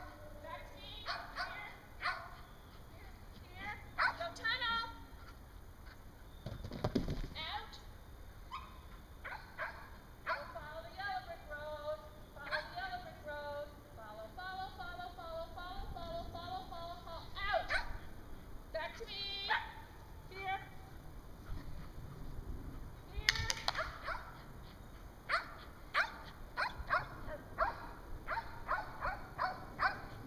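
Dog barking at intervals, mixed with a handler's short called-out cues to the dog as it runs an agility course.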